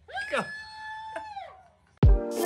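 A young man's long, high-pitched yell of excited disbelief, rising and then held for about a second before it trails off, with a short click midway.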